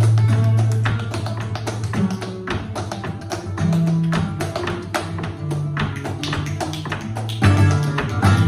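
Flamenco tarantos: a Spanish guitar plays under a dense run of sharp percussive strikes from the dancer's shoe taps on the wooden stage and hand-claps (palmas). A loud new guitar attack comes in near the end.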